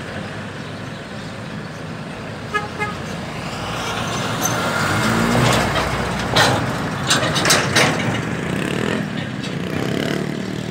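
Ford Cargo diesel truck with an empty flatbed semi-trailer driving past: engine and tyre noise swells as it approaches and goes by, with several sharp knocks and rattles from the empty trailer as it passes. A few short high beeps sound after a couple of seconds.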